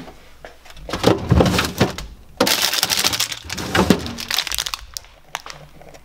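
Plastic snack wrappers crinkling and crackling as packets are handled, in bursts with the densest stretch in the middle, mixed with a few sharp clicks and knocks.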